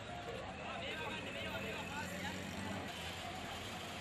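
Street noise: vehicle traffic running steadily, with people's voices mixed in.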